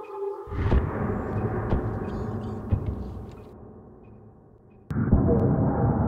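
Two deep boom hits laid over the music. The first comes about half a second in, cutting off a held synth tone, and rumbles away over about four seconds. The second hits sharply near the end.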